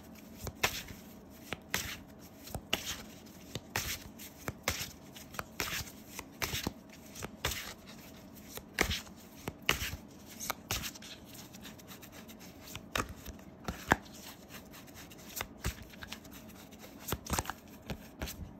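A deck of tarot cards being shuffled by hand: cards slapping and sliding against each other in quick, irregular clicks, with short pauses.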